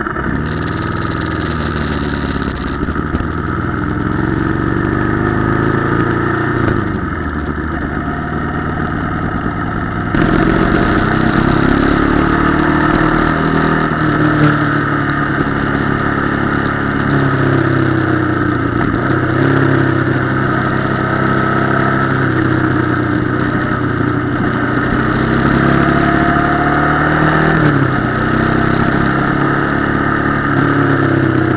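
Ducati Monster 696's air-cooled V-twin engine pulling away and accelerating, its pitch climbing and dropping again at each gear change, several times over.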